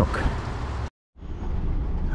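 Steady rain noise with low wind rumble on the microphone beside a lorry, broken off by a sudden total silence about a second in, after which the sound is duller, with rain heard from inside the cab.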